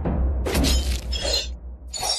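Animated logo sting: a deep rumble under music, with a shattering crash about half a second in and another starting near the end.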